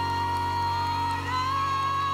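Live ballad performance: a female singer holds one long high note over steady sustained band backing. The note steps slightly higher near the end.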